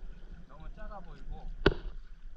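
Faint, untranscribed talking with a steady low rumble, and a single sharp knock about a second and a half in.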